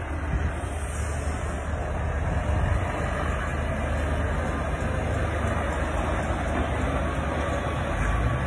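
Diesel articulated truck (tractor unit hauling a long trailer) driving slowly past, a steady low engine rumble with tyre noise.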